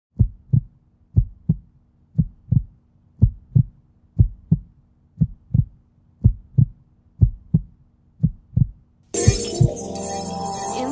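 Heartbeat sound effect: a steady run of paired low thumps, lub-dub, about once a second. About nine seconds in, loud music comes in over the last beat.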